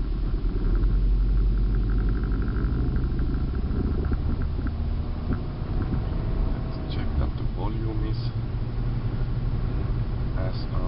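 Steady low rumble of a car's engine and road noise, heard inside the cabin while driving.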